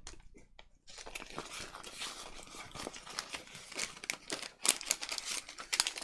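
Plastic packet crinkling and rustling in the hands as it is worked open, with many small crackles and clicks; it starts about a second in. The packaging is tucked shut and slow to get into.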